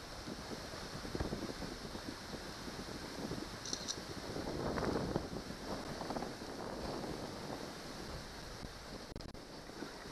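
Wind buffeting the microphone over choppy lake water, a steady rushing noise that swells in a gust about halfway through, with a few small knocks.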